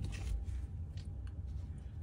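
Faint handling sounds of a rubber band being wrapped around the handles of a pair of pliers, with a few light clicks and rubbing.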